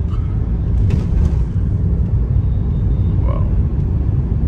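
A moving car's steady low rumble of road and engine noise, heard from inside the cabin.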